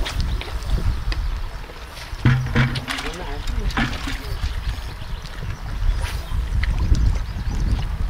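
River water lapping and sloshing around a log at the bank, with a steady low rumble of wind on the microphone and scattered light clicks. A short voice sounds about two seconds in.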